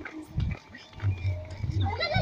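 Low rumbling and a thump on the microphone of a handheld camera being jostled while walking, with faint voices around it.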